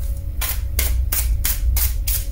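A deck of tarot cards being shuffled by hand: quick shuffling strokes, about three a second, starting about half a second in, over a steady low hum.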